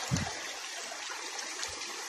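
Muddy floodwater flowing steadily across a flooded path, an even watery rush, with one soft low thump just after the start.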